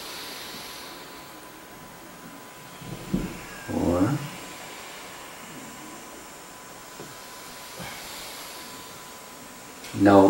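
Slow deep breathing in a quiet room over a steady hiss and a faint constant tone. About three to four seconds in comes a brief sound of voice, rising in pitch.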